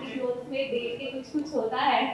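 Speech: a woman talking in an interview, with no other sound standing out.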